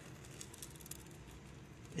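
Faint, scattered crackles from a small strip of birch bark burning, over a quiet background.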